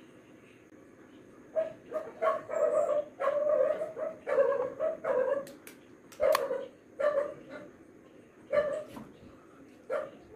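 A dog barking: clusters of short, loud barks beginning about a second and a half in and going on to about nine seconds, with one more at the very end.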